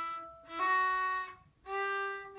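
A fiddle played with the bow: separate bowed notes stepping up in pitch, each about a second long, with a new one starting about half a second in and another near the end. At the first change the old note carries over briefly into the new one, the kind of unclean note change that comes from not fully stopping the bow.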